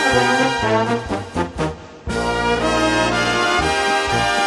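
Egerländer-style brass band playing a lively tune, with tubas carrying the bass line. About a second in, the band thins out briefly. At about two seconds the full band comes back in with a long held chord, then resumes the beat.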